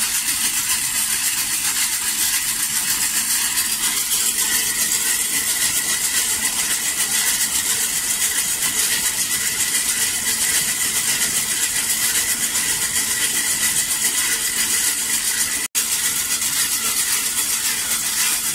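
Small hand-cranked blower whirring steadily as it is turned, forcing air into the fire that heats a bandsaw blade joint for brazing, with the rush of the blown flame. The sound cuts out for an instant near the end.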